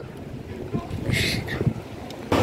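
Wind rumbling on a handheld phone's microphone over outdoor street ambience, with faint indistinct voices and a brief hiss about a second in.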